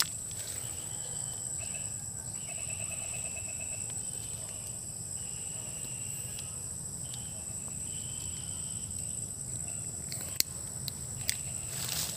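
Insects chirring with a steady high-pitched whine, overlaid by shorter intermittent trilling calls. Two sharp clicks come near the end.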